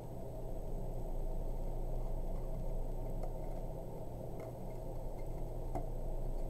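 Tarot cards being handled on a table: a few faint clicks and taps, about three spread over several seconds, over a steady low room hum.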